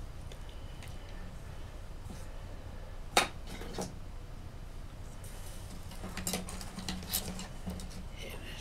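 Small clicks and clatter of sculpting tools being handled on a desk: one sharp click about three seconds in, then a run of lighter clicks in the second half, over a low steady hum.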